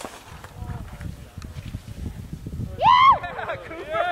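A person's loud, high-pitched whooping shout about three seconds in, rising and then falling in pitch, followed by shorter hoots, over a low rumble of wind and movement on the microphone during the run.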